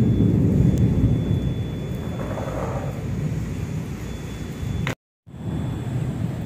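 A steady low rumble of background noise with no speech, dropping out abruptly to silence for a moment about five seconds in at an edit.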